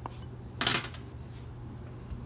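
Metal spatula scraping against a mixing bowl of wet plaster, one short scrape about half a second in.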